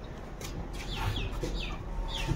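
Birds calling: a few short chirps that fall in pitch, around a second in and again near the end, over a low steady background hum.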